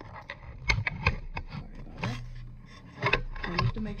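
Handling sounds: a string of short clicks and taps with rubbing and scraping in between, as things are moved about on a cutting mat. A low hum runs underneath.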